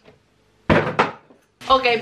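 A short knock and rustle of packaging being handled, as the cardboard box is tossed aside: two quick noisy hits about two-thirds of a second in, lasting about half a second. A spoken "Ok" comes near the end.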